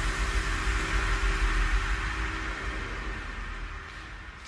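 The tail of an electronic workout track fading out: a wash of noise over a low bass rumble, dying away steadily.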